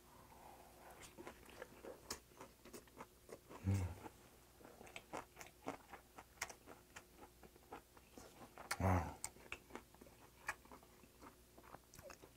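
Close-miked chewing of a mouthful of rice wrapped in a steamed pumpkin leaf with doenjang: soft wet mouth clicks and smacks throughout, with two short hums about four and nine seconds in.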